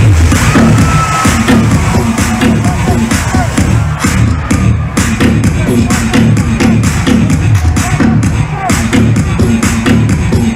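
Loud electronic dance music drop with a heavy, steady kick-drum beat, played over a nightclub sound system, with a crowd cheering underneath.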